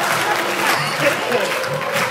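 Audience applauding, with voices calling out and music playing underneath.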